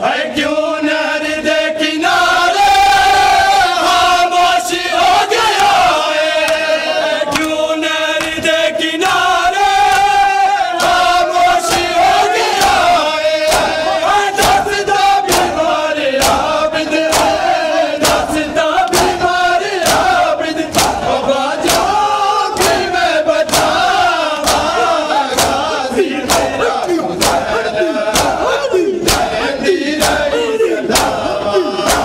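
Group of men chanting a noha lament in unison, with rhythmic chest-beating (matam): open-hand slaps on bare chests, roughly once a second.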